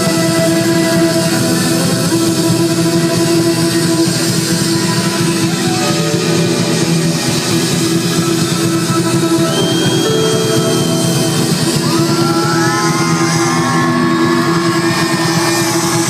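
Live band playing an instrumental opening, with bouzouki, electric guitar and keyboards on stage, held chords running steadily under it. From about twelve seconds in, sliding high notes rise over the chords.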